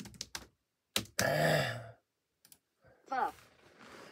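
A man's voiced, breathy sigh lasting under a second, starting about a second in. Before it come a few faint clicks, and a short, soft hesitation sound follows near the three-second mark.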